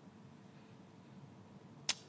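Faint room tone with a single short sharp click near the end.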